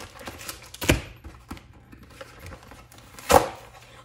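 Handling noise at a desk: two sharp knocks, about a second in and again near the end, with faint rustling and small clicks between as a card pack is handled.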